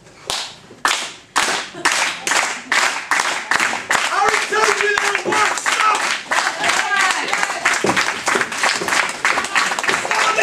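Rhythmic hand clapping from the audience, about two claps a second and gradually quickening, with voices calling out over it from about four seconds in.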